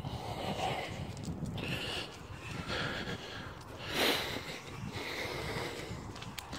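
Bullmastiff breathing and sniffing as it walks on a lead, with one louder snort about four seconds in.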